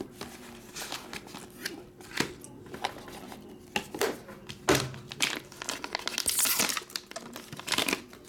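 A foil trading-card pack being handled, crinkled and torn open, with scattered taps and clicks from the card box. The crinkling and tearing grow denser from about six seconds in.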